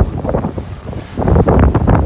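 A strong, howling southerly wind blowing across the microphone in gusts. It drops off briefly about half a second in and picks up again about a second later.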